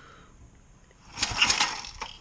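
Recoil starter cord on a Briggs & Stratton horizontal-shaft edger engine pulled once about a second in: a short rattling burst as the engine cranks over without starting. It is a rough hand check of compression after the cylinder soaked overnight to free stuck piston rings.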